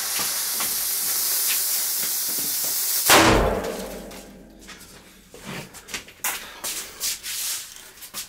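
A large firecracker's lit fuse hisses steadily for about three seconds, then the firecracker explodes with a single loud bang that dies away over about a second. A few faint knocks and rustles follow.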